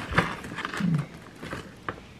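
A dog waiting for a treat makes a short, low vocal sound about a second in, with a few sharp clicks and light rustling from paws and the treat bag on a wooden floor.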